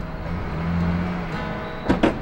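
Pickup truck engine running, heard from inside the cab as a steady low hum under background music, with one sharp knock near the end.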